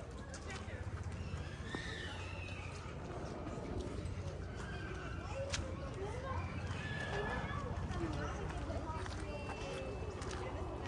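Faint, indistinct voices of people talking at a distance, over a steady low rumble.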